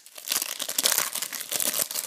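Foil wrapper of a Panini Euro 2012 trading-card booster pack crinkling and tearing as it is opened by hand: a dense run of crackles.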